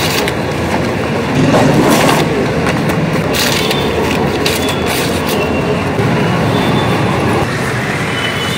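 Paper grocery bags rustling and crinkling in short bursts as they are handled and packed into a backpack, over a loud, steady rumble of street traffic.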